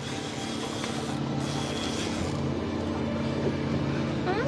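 Boat motor running steadily with a low hum, under a steady rush of water and wind.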